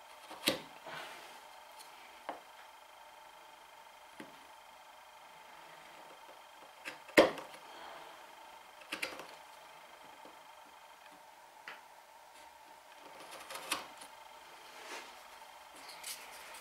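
A bench chisel pushed by hand straight down on a knife line, paring across the wood's end grain: a scattering of short sharp clicks and crunches as the edge severs the fibres, the loudest about seven seconds in.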